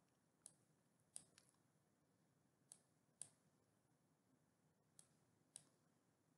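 Faint computer mouse button clicks, about seven at uneven intervals, in near silence.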